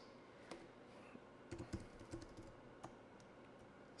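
A few faint, scattered computer-keyboard keystrokes over near-silent room tone.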